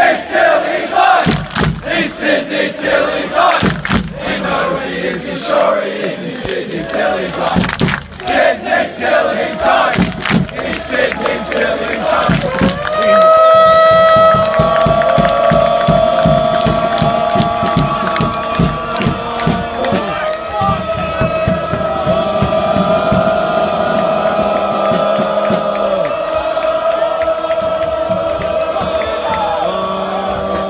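Football supporters' crowd chanting together with rhythmic clapping and shouts. About twelve seconds in, the chanting gives way to a steady song with long held notes that carries on.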